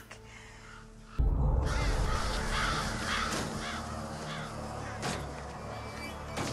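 A flock of crows cawing, breaking in suddenly with a deep thump about a second in, then slowly fading, over film score music.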